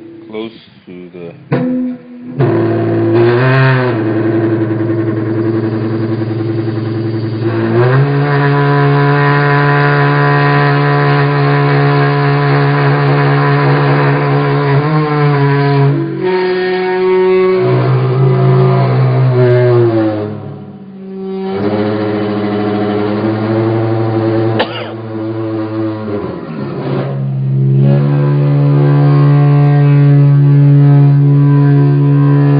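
Fretless seven-string electric guitar sustaining long amplified notes by speaker feedback, with a small speaker held against the strings. After a few short notes, the held notes start about two seconds in and slide up and down in pitch between them, with a short break about two-thirds of the way through.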